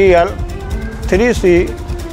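A man speaking Hindi in short phrases, reading out a vehicle registration number, with a brief pause between the phrases.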